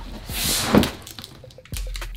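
A heavy cardboard product box scraping as it is slid and tipped over, ending in a single thump as it comes to rest on its side about three-quarters of a second in, followed by quieter handling.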